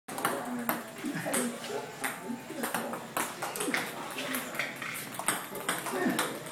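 Table tennis balls clicking off bats and the tabletop in a quick run of shots, about two to three sharp hits a second, with voices mixed in.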